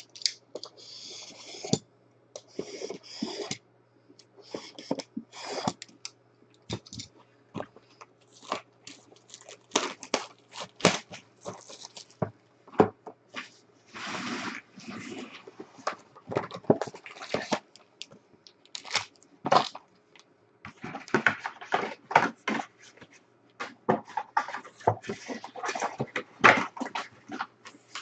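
A cardboard Panini Prizm football hobby box being opened and its foil card packs handled: irregular rustling and crinkling with many sharp knocks and clicks, over a steady low hum.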